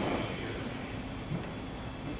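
Steady low background hum of a room, with no clear events.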